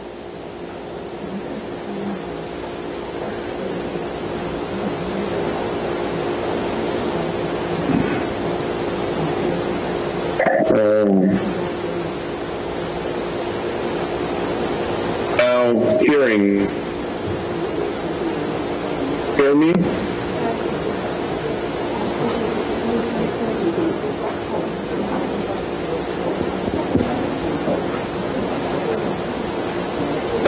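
Steady hiss with a faint, steady hum, from a video-call audio feed on an unstable network connection; the hiss rises slowly in level. It is broken three times, about 11, 16 and 20 seconds in, by brief snatches of garbled, warbling voice.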